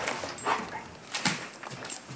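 A dog whimpering in a few short sounds, with rustling and handling noises.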